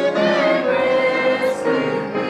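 Small mixed church choir of men's and women's voices singing together in held chords, moving to new notes just after the start and again near the end.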